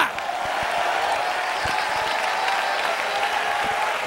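A large congregation applauding steadily, with crowd voices mixed in.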